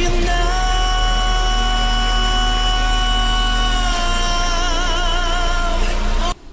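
A male K-pop vocalist holds one long, high sung note live over the song's backing track. The pitch stays level at first, then vibrato sets in over the last couple of seconds.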